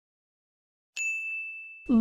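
A single bright ding chime about halfway in, one steady high tone that rings for nearly a second and fades, marking the end of the countdown and the reveal of the quiz answer.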